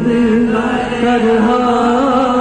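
Sikh kirtan: male voices singing a hymn over a steady harmonium drone, the sung line gliding and wavering above the held reed notes.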